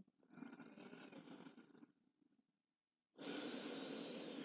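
A woman's slow, deep breathing, faint: a quiet breath for about a second and a half, a pause of just over a second, then a louder, longer breath from about three seconds in.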